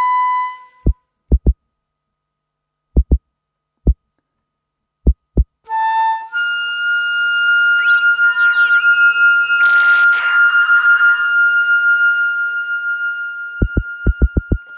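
Solo flute with electronic effects. Sparse pairs of short low thumps, like a heartbeat, sit under short flute notes. About six seconds in, a long high note is held with sliding tones layered over it and a brief breathy swell, and the paired thumps return near the end.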